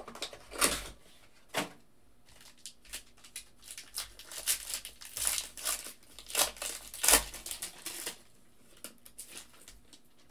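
Foil wrapper of a Panini Crown Royale basketball card pack crinkling and tearing as it is torn open by hand. The crackles come in sharp clusters, busiest and loudest between about four and eight seconds in.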